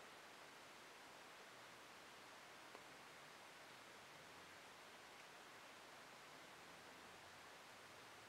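Near silence: faint steady hiss of room tone, with one tiny tick a little under three seconds in.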